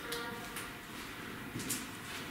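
A brief, faint voice-like sound at the very start, put forward as a ghost's voice, followed by a few short, sharp clicks.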